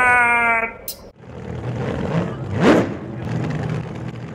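Cartoon intro sound effects: the end of a drawn-out cartoon-voice cry, then a rushing noise with one quick rising whoosh about two and a half seconds in.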